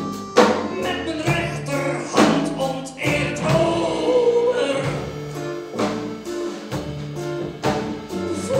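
Live acoustic band playing an instrumental break: accordion, acoustic guitar, upright double bass and drum kit. A lead melody line is held over steady bass notes, with a drum hit about once a second.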